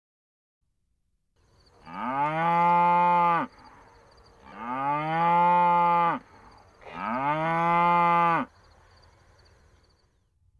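A cow mooing three times, each moo about a second and a half long, rising in pitch at the start, then held steady and cut off sharply.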